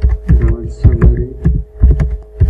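Computer keyboard being typed on, several quick keystrokes a second, each a sharp click with a heavy low thud. A steady electrical hum runs underneath.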